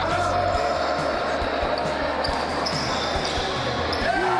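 Background music over a basketball game, with a basketball bouncing on the court floor several times at uneven intervals.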